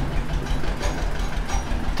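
A steady low machine-like hum, with the faint scratch of a marker writing on a whiteboard.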